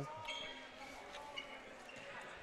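Faint gymnasium sound during a basketball game: low crowd chatter, with a basketball being dribbled and a faint knock about a second and a half in.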